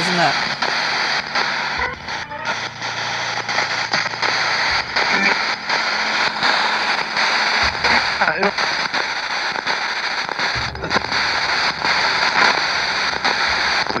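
Spirit box sweeping through radio stations: steady hiss and static, chopped every fraction of a second, with brief fragments of radio voices and music breaking through a few times. The investigator takes a fragment as the word "leave".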